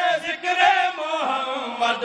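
A man's voice chanting a devotional qasida in long, held, sung notes that rise and fall.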